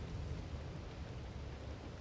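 Steady rain, an even hiss with a low rumble underneath.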